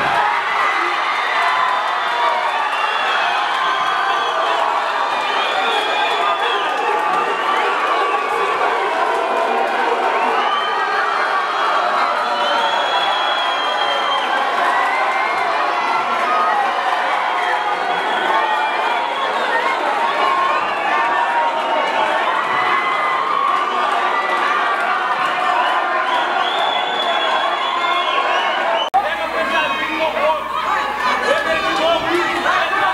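Arena crowd cheering and shouting after a knockout, many voices overlapping at once. The sound changes abruptly about a second before the end.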